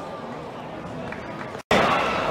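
Indistinct voices and chatter from spectators in a sparse football stadium crowd. About one and a half seconds in, the sound cuts out briefly at an edit and comes back louder, with voices nearer and clearer.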